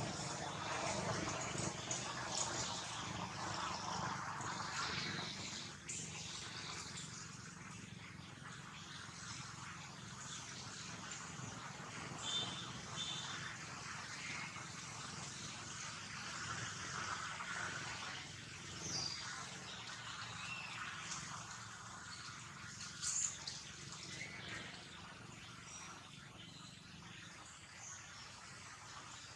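Outdoor forest ambience: a steady, fairly faint background din with a couple of short high chirps about halfway through and a few brief louder rustles or knocks, the sharpest one about two-thirds of the way in.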